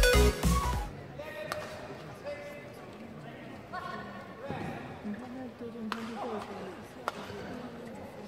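Electronic intro music cuts off about a second in, giving way to the sound of a badminton rally in an indoor arena: a few sharp racket hits on the shuttlecock, with voices and crowd murmur in between.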